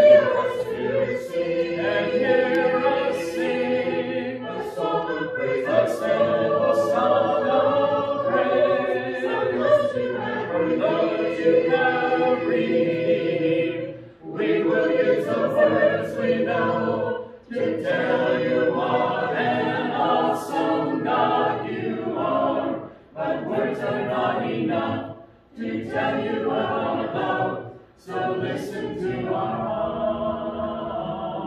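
Congregation singing a hymn a cappella, voices without any instruments, led from the front. The singing runs in phrases, with brief breaths between lines in the second half.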